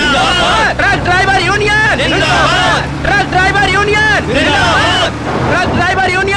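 A crowd of men shouting slogans together in rhythm, over the steady low rumble of running engines.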